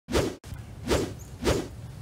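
Three quick whoosh sound effects of an animated title card, each a short rush of noise, about half a second apart, over a steady low rumble.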